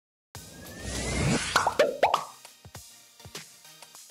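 Title-card sound effects: after a moment of silence, a rising whoosh builds for about a second, then a quick run of plopping pops that drop in pitch. After that, a light background music bed with a steady ticking beat takes over.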